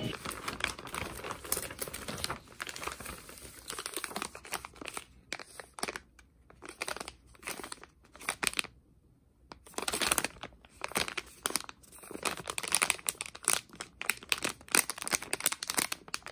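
A foil-backed gummy candy pouch crinkling as it is turned over and handled, in irregular bursts with a short lull a little past the middle.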